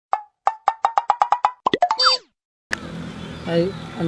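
Cartoon-style editing sound effect: a run of short popping blips that come faster and faster, ending about two seconds in with a falling, springy glide. Outdoor background noise follows near the end.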